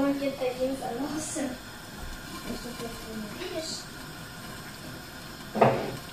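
Butter-and-sugar syrup boiling with a soft hiss in a glass-lidded frying pan of popcorn kernels; no kernels are popping yet. Indistinct voices come in over it during the first second or so and again near the end.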